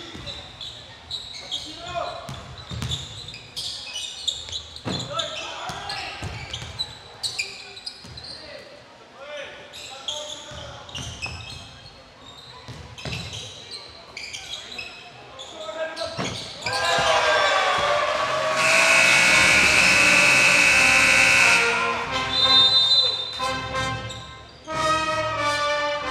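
Basketball bouncing on a hardwood gym floor, with sneaker squeaks and players' shouts. About sixteen seconds in, shouting and cheering rise, and then a loud steady horn tone sounds for about three seconds and cuts off. Music begins over the speakers near the end.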